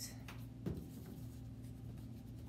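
Glue stick being handled and applied to construction paper: one light knock about a third of the way in, then a few faint clicks and scrapes, over a steady low hum.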